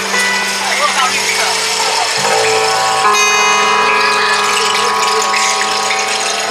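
Rain stick tilted slowly, its pebbles trickling down the tube as a steady hiss, over a sustained low drone chord that breaks and re-forms about two seconds in.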